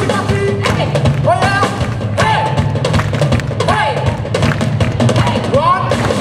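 Live blues band playing: steady bass and drum kit, with swooping, bent notes rising and falling over them.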